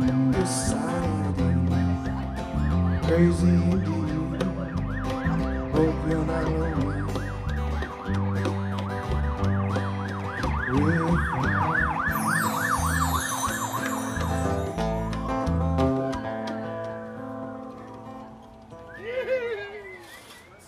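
An emergency-vehicle siren passes while a live band's acoustic guitar and bass play out the end of a song. The siren first warbles fast and grows louder, then switches to a slow rising and falling wail as the music stops about three-quarters of the way in.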